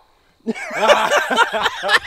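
A man's loud, wordless vocal outburst, starting about half a second in: his reaction to burning his tongue on a too-hot bite of food.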